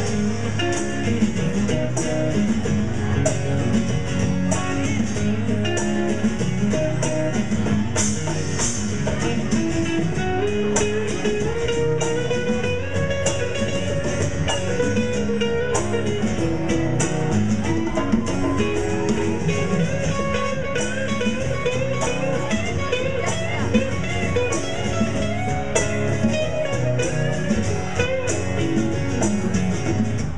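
Live rock band playing, electric and acoustic guitars over a drum kit, with a steady drum beat throughout.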